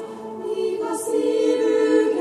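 Choir singing held chords in a sacred piece. The sound eases briefly at the start, then a new chord enters about a second in with a sung 's' consonant.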